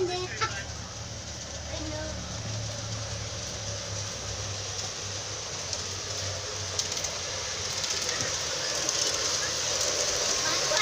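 G-scale model diesel locomotive running on garden track toward the microphone: a steady rolling, whirring noise that slowly grows louder as it approaches, over a low steady hum.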